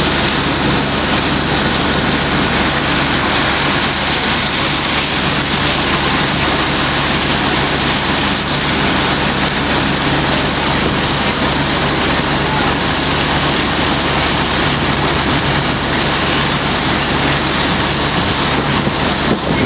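A heavy engine running steadily, a low even hum under a loud, constant rushing noise.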